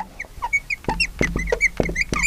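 Marker squeaking on a glass lightboard as a word is written: a quick run of short, high squeaks, with light taps of the marker tip on the glass.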